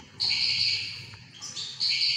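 Caged songbird singing: a rapid, high trill in two phrases, the second starting about one and a half seconds in.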